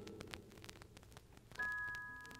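Vinyl record surface noise, scattered small clicks and crackle, in a gap in the recording. About one and a half seconds in, a soft held chord of a few steady chime-like notes starts and slowly fades.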